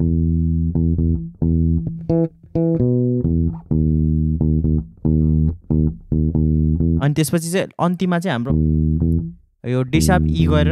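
Electric bass guitar played on its own, a phrase of short plucked low notes, several a second, with brief breaks between groups of notes. A voice cuts in briefly about seven seconds in.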